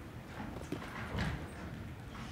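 A few irregular footsteps across a stage, faint against the low hum of the room.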